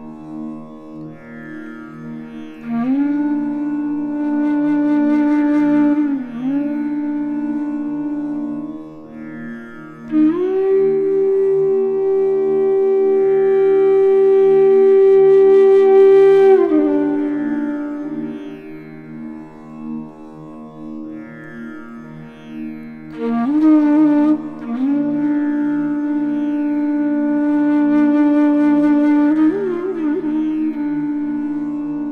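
Bansuri (Indian bamboo flute) playing a slow alap-like line in Raag Bihag over a steady drone. It has long held notes joined by gliding slides, one note held for about seven seconds midway.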